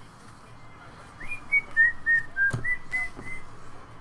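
A person whistling a short tune of about eight short notes, starting about a second in, with a single light click partway through.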